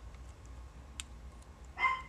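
A dog barks once, a short bark near the end. A faint click comes about a second in.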